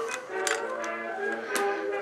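Soft background music with held tones. Two light clicks come through it, about half a second in and near the end, from small plastic clock parts being handled.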